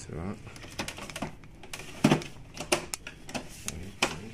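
Sharp clicks and knocks of a printer's hard plastic casing being handled, a few in the second half, the loudest about two seconds in, with voices talking underneath.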